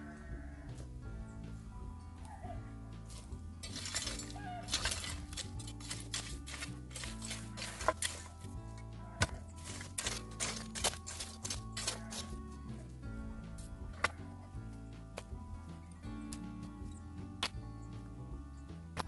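Background music with a steady low line. Over it, from about four seconds in, a shovel scrapes through stony soil, and a quick run of stones clinks and knocks as they are dug out and tossed aside. This eases off after about twelve seconds, leaving an occasional single knock.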